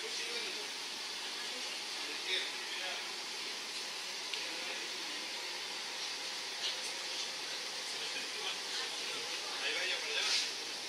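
Steady hiss inside a stationary diesel passenger railcar, with faint voices in the background.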